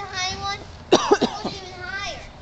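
A young child's high-pitched voice talking, broken about a second in by two short, sharp, loud vocal bursts, like coughs.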